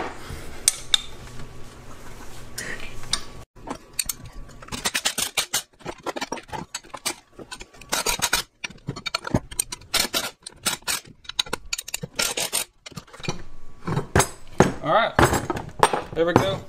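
Wrench clinking and clicking against steel nuts and bolts while a hub is bolted onto a steel go-kart chain sprocket: many short irregular metallic clinks.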